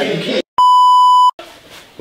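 An electronic bleep: one steady, pure beep tone under a second long that cuts in and out abruptly, the kind dubbed over a word to censor it.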